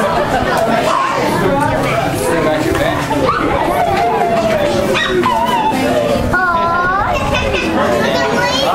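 Overlapping chatter of several children and adults talking at once, with higher children's voices rising above the rest and no single voice clear.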